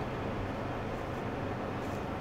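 Steady, quiet hum inside the cabin of a Kia K5 creeping backwards at low speed.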